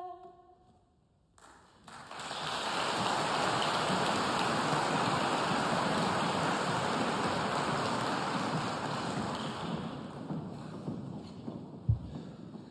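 The last held chord of an a cappella women's choir fades out, and after a second of silence the audience breaks into applause, which dies down near the end. A single sharp knock sounds just before the end.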